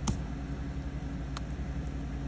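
Steady low background hum with a single light tap about one and a half seconds in, as the plastic scratcher tool touches the scratch-off ticket; no scratching strokes.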